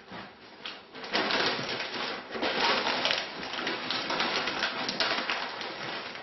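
Sheets of packing paper crinkling and rustling as they are rolled and folded around a pottery vase. The rustling starts about a second in and keeps going.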